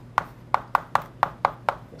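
Chalk knocking and scraping on a blackboard as letters are written: about seven short, sharp taps in under two seconds.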